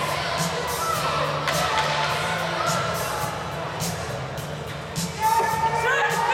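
Music playing over an ice hockey arena's sound system, with scattered sharp knocks from play on the ice. A voice-like shout rises near the end.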